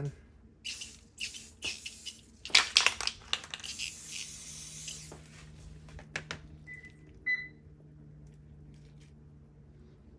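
Clinking and clattering of small hard objects being handled, densest and loudest about two to three seconds in, followed by two short high chirps a little past the middle.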